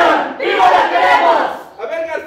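A group of voices shouting together in unison, in two loud drawn-out phrases, the second starting about half a second in: a shouted group chant.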